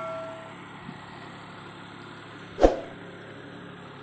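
The ringing tail of a bell-like chime from a subscribe-button animation fades out in the first half second. It leaves steady tropical forest ambience with a constant high drone of insects. A single short knock comes about two and a half seconds in.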